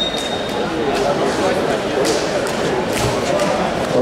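Indistinct chatter of many voices echoing in a large sports hall, with a few faint knocks mixed in.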